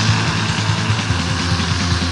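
Black metal song from a 2001 demo tape: distorted electric guitars and drums playing steadily, with a raw, lo-fi sound.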